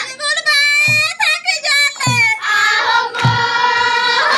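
Students' voices singing a song, with a short low thump marking a beat about once a second.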